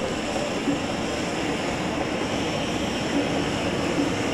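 Steady rushing noise of gas burners in a glassblowing hot shop, such as a glory hole or hand torch.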